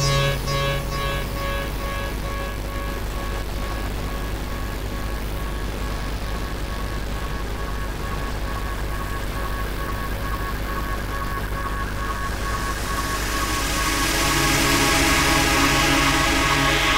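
Techno in a DJ set, in a breakdown. The kick drum drops out just after the start, leaving a steady low bass drone and a pulsing synth note. Near the end a hissing riser builds and the music swells louder again.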